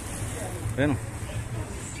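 A man says a single short word a little under a second in, over a steady low background rumble.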